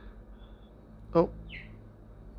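A man's short exclamation, "Oh," about a second in, over a faint steady low hum.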